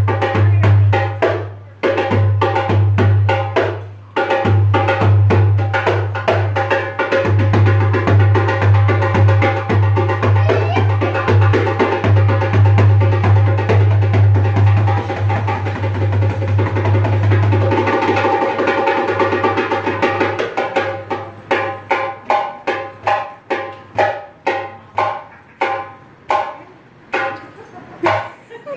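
A Middle Eastern hand drum is played as a fast solo of dense rolls with a deep booming bass. It breaks briefly twice near the start. In the last third it thins to single strokes, about three a second.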